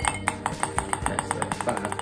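Ping-pong ball dropping into a glass tumbler and bouncing inside it, the clinks coming faster and faster until it settles near the end.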